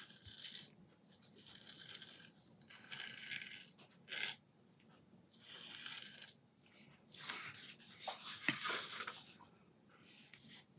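Pen nib scratching across textured pastel paper as ink lines are drawn: a series of short scratchy strokes with pauses between them, and a longer run of strokes between about seven and nine seconds in.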